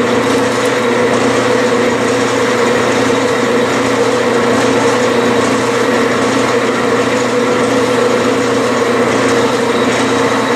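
Metal lathe running steadily with a constant drone, its spindle turning a lead workpiece while a parting tool cuts into it.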